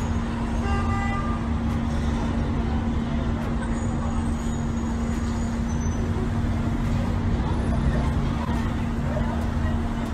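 City street traffic noise with vehicles running, and a single steady low hum underneath throughout.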